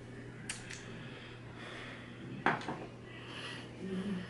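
A plastic feeding spoon clicking against a baby-food jar as food is scooped: two light clicks about half a second in, then one louder clack about two and a half seconds in.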